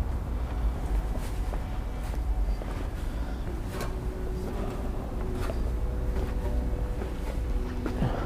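Footsteps going down a steep, gritty stair ladder: a few scattered knocks and scuffs of shoes on the treads over a steady low rumble.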